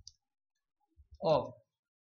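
A few faint computer-keyboard keystroke clicks while text is typed, with one short spoken syllable a little past the first second. Otherwise near silence.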